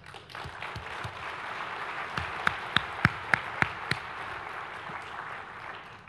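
Audience applause that swells up just after the start and thins out near the end, with a few louder, closer claps standing out in the middle.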